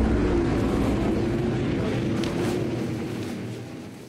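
Sprint car engine running at speed, heard from an onboard camera in the cockpit, a steady drone that fades out near the end.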